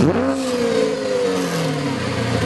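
Logo-sting sound effect of a car engine revving: the pitch swoops down sharply at the start, then falls slowly and steadily.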